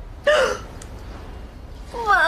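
A woman's single short gasp of dismay, a voiced 'ah' that falls in pitch, about a quarter second in.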